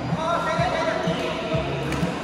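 Indoor badminton hall noise: a voice calling out for over a second, over irregular low thumps and faint music.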